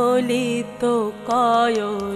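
A female kirtan singer's long, ornamented, wavering vocal phrases over a steady drone, in two held phrases with a short break about a second in.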